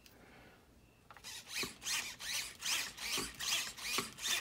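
Steering servo whirring in short repeated bursts, about three a second, starting about a second in, as the gyro at full gain corrects the steering while the truck is moved.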